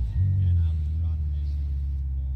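Ferrari SF90 Stradale's twin-turbo V8 running with a steady low rumble, with a brief dip just after the start. The car is on an icy slope where it slides.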